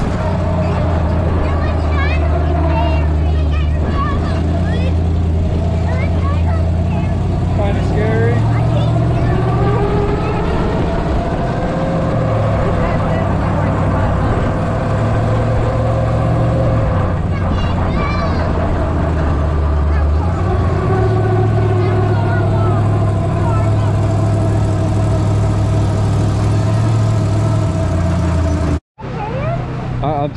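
Engine of a monster-truck ride vehicle running under way, heard from its open passenger compartment: a deep, steady drone that rises and falls in pitch a few times, with faint voices over it. It cuts off suddenly near the end.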